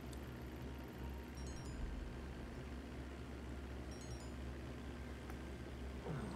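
Faint steady low hum under a light hiss, the background room tone of a livestream's audio, with a couple of tiny high ticks.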